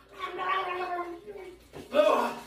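A man gargling a mouthful of liquid with his voice. The gurgle holds for about a second and then trails off.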